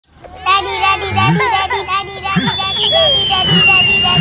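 Several children's voices babbling and clamouring over one another, with a long high tone sliding slowly downward from about halfway through.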